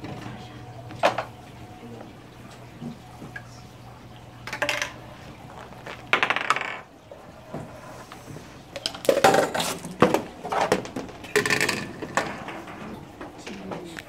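Knocks and clatter from a homemade Rube Goldberg machine running, with a marble, PVC pipes, a plastic bucket and other pieces striking one another. The knocks are spaced out over the first half, then come in quick succession from about nine seconds in.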